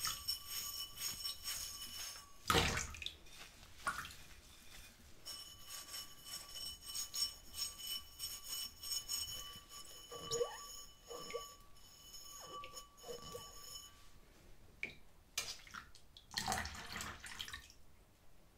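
A wet stemmed glass being washed by a rubber-gloved hand with a sponge in a sink of soapy water: water dripping and sloshing, short squeaks of the sponge on the glass, a knock about two and a half seconds in, and a swish of water near the end. A faint, steady, high ringing tone runs under much of it and fades out about two-thirds of the way through.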